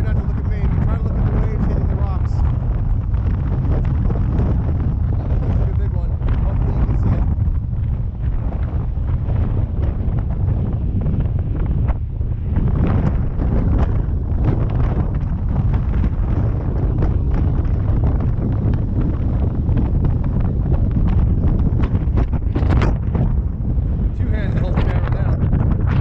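Strong wind buffeting the camera's microphone: a loud, unbroken low rumble.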